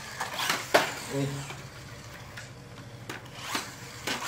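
Small plastic friction-powered toy dump truck pushed along a tabletop to charge its flywheel, then rolling free: a steady low whirr from its gearing, with plastic clicks and knocks as the wheels are pressed and scraped on the table.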